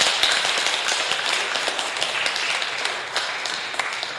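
A small congregation clapping by hand, the applause thinning out near the end.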